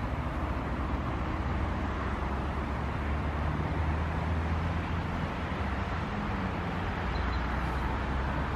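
Steady low rumble of distant road traffic, with a faint engine tone swelling through the middle.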